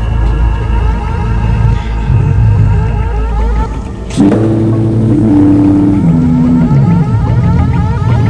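Experimental electronic music. A low drone with rippling tones gives way, about halfway through, to a sudden sharp swoosh and then a synth tone that steps down in pitch over the next few seconds.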